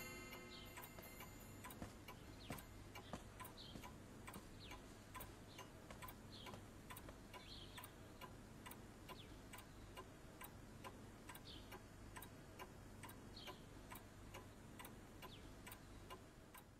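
Clock ticking steadily and faintly in a hushed room.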